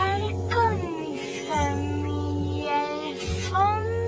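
A children's song: a child's voice sings a melody over music with held bass notes that start and stop about every second.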